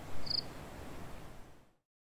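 Faint outdoor background hiss with a short soft rush of noise at the start and a brief high insect chirp, cricket-like, about a third of a second in. The sound then cuts to dead silence near the end.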